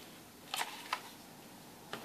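Plastic Syma X5C radio-control transmitter handled and set down on a workbench: three light clicks and knocks, about half a second, one second and two seconds in.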